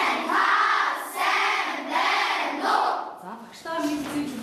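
A class of young schoolchildren chanting together in unison, about four long drawn-out syllables, stopping about three seconds in.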